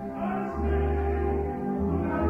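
Live opera performance: orchestra and singing voices, with a low held bass note from about half a second in.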